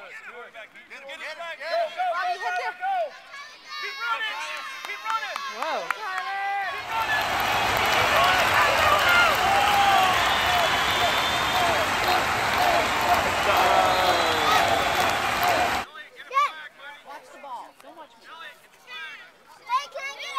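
Children and adults calling out on an open field during a flag football play, then a loud, even rushing noise that cuts in abruptly about seven seconds in and cuts off just as abruptly about nine seconds later, with voices still heard through it.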